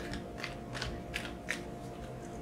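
Tarot cards handled and shuffled in the hands: several short, crisp card flicks spaced under half a second apart.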